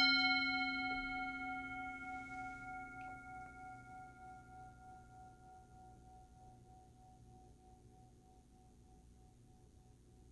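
Brass singing bowl struck once with a wooden mallet, rung to open prayer. It rings with several tones at once that fade gradually over about nine seconds, the strongest one wavering in a slow pulse as it dies away.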